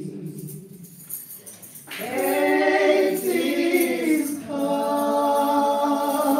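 Women's voices singing a gospel communion hymn. A fresh phrase comes in about two seconds in, after a brief lull, and settles into a long held note near the end.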